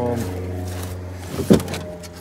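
A steady low mechanical hum from a running motor, with one sharp knock about one and a half seconds in.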